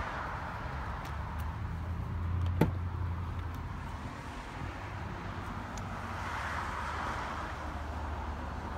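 Driver's door of a Rolls-Royce Ghost being unlatched and opened, with a single sharp latch click about two and a half seconds in, over a steady low outdoor rumble.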